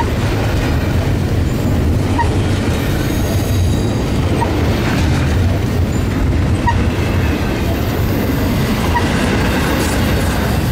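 Double-stack intermodal well cars of a CSX freight train rolling past close by: a steady, loud rumble of steel wheels on rail, with a brief squeak about every two seconds.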